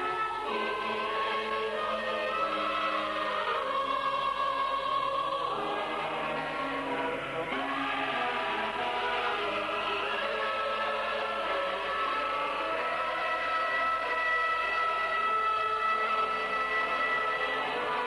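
Choir singing slow, long-held chords, which shift every few seconds.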